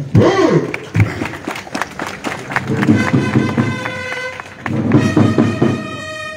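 A crowd applauding with many hands after a speech, then a brass band with drums starts playing about three seconds in.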